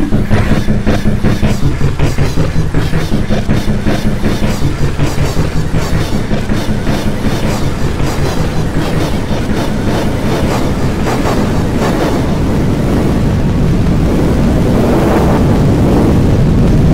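Heavily distorted, effect-processed electronic audio: a fast repeating stutter, several pulses a second over a low steady drone, that speeds up until it blurs into one continuous distorted roar in the last few seconds.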